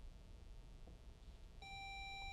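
Near silence, then, about one and a half seconds in, a quiz-bowl buzzer system gives one steady electronic beep as a contestant buzzes in to answer a toss-up.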